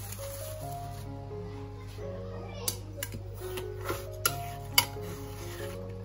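Background music of soft held notes stepping from one to the next. Over it come a few sharp clicks and taps, the loudest a little before the end, from plastic wrap being handled and a metal spatula against a glass baking dish.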